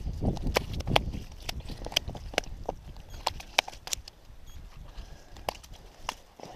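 Irregular sharp knocks and taps as a trout is handled and laid down on the ice, the hits coming thickest in the first few seconds and thinning out near the end.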